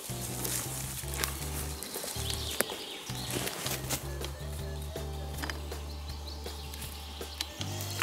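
Minelab metal detector giving a low, buzzing target tone that sounds in on-and-off pulses as the coil is swept back and forth over a signal under a tree root. The tone shifts to a single steadier note near the end, with light rustling clicks from the forest floor.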